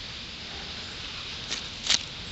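Steady background hiss, with two short rustles near the end, the second louder.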